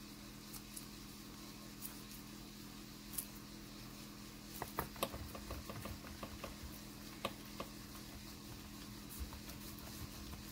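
Faint small clicks, taps and rubbing of nitrile-gloved hands kneading ink-tinted polymer clay and picking up pieces from a work tile, busiest about five seconds in, over a steady low hum.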